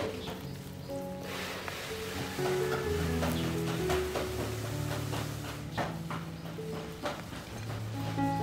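Background music with steady held notes. From about a second in, the toasted crust of a cream cheese garlic bread crackles as it is torn apart by hand, with a few sharper cracks near the middle and toward the end.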